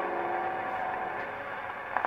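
Final held chord of a 1903 Victor acoustic disc recording of a cornet solo with accompaniment, fading out over about a second on playback. It leaves a steady surface hiss from the old record.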